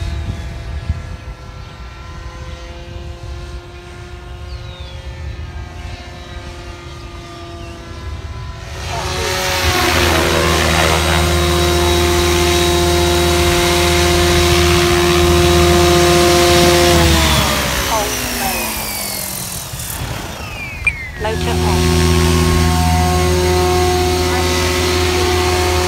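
Goblin 570 Sport electric RC helicopter flying, its motor and rotor blades giving a steady whine, faint while it is high up and much louder from about nine seconds in as it comes low and close. Near the end the pitch slides down for a few seconds, then the whine returns loud and steady.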